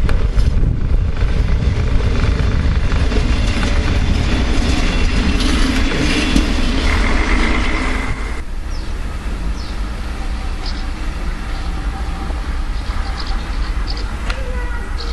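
A train running on rails, heard from on board: a steady low rumble with wheel-on-rail noise. About eight seconds in the sound cuts to a quieter rumble with faint, brief high squeaks.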